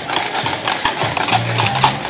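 Many shod Clydesdale hooves clip-clopping on a paved street as a team of draft horses walks past pulling a wagon, with quick, irregular overlapping strikes. A low droning tone runs underneath in the second half.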